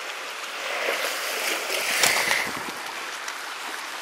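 Steady wash of the sea on a pebble shore, swelling about a second in, with a few light clicks of pebbles being handled.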